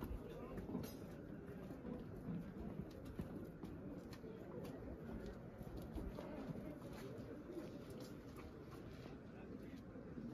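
Faint outdoor ambience with indistinct, distant voices of people talking.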